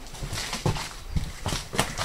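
Footsteps of people walking through a burned-out room: irregular steps and scuffs on the floor.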